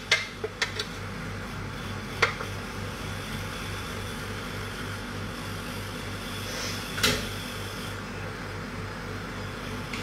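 Kitchen range-hood extractor fan running with a steady hum, with a few light clicks of utensils in the first second and one sharp clatter about seven seconds in.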